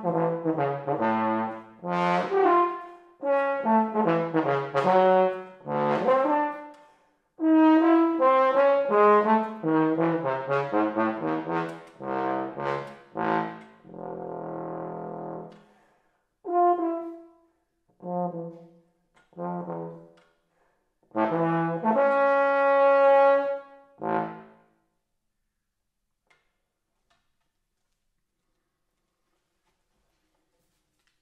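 Unaccompanied bass trombone playing a slow solo of separate phrases across its low and middle register, with one rough, buzzy note midway. It ends on a long held note, and the playing stops after about twenty-five seconds.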